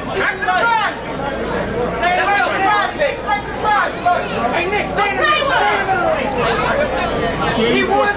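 Several voices talking and calling out over one another: crowd chatter with no single clear speaker.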